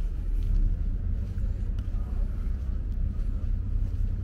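Wind buffeting the camera's microphone: an uneven low rumble, with faint voices in the background.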